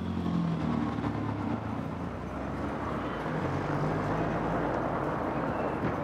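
City street traffic: a motor vehicle engine running with a low steady hum, and traffic noise swelling in the middle.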